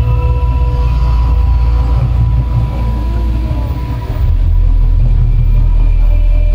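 Deep, steady rumble of the Mirage volcano show's eruption effect, stepping up louder about four seconds in, with faint sustained tones above it.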